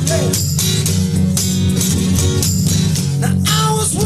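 A band playing an acoustic rock song live: strummed acoustic guitar in steady strokes over held bass notes.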